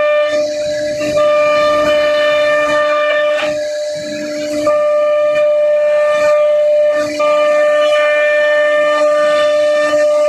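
CNC router spindle running at speed with a steady high whine and overtones while it cuts a pattern into a laminated particle board sheet. The upper overtones fade out briefly three times, about half a second in, around four seconds and near seven seconds.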